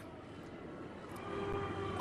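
Faint outdoor street ambience picked up by a lectern microphone: a steady low hum of distant traffic and city noise, growing slightly louder in the second half, with a faint drawn-out tone near the end.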